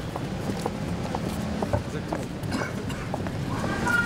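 Footsteps of several people walking on a paved sidewalk: hard shoe soles clicking irregularly over a low, steady background hum.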